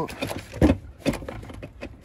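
A few short clicks and knocks of hard plastic and metal parts being handled, as the air box of a small 125cc motorcycle is worked loose by hand; the loudest knock comes about two-thirds of a second in.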